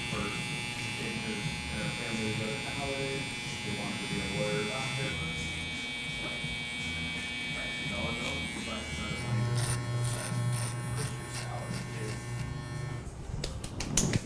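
Cordless hair trimmer buzzing steadily as it trims along a moustache. Its tone shifts about five seconds in and again about nine seconds in, and it stops about a second before the end.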